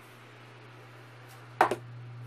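A plastic fish-food canister, flipped through the air, lands on a wooden table with one sharp knock about one and a half seconds in, over a steady low hum.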